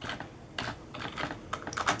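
Computer keyboard keys being typed one at a time: a run of short, unevenly spaced keystroke clicks as a command is entered.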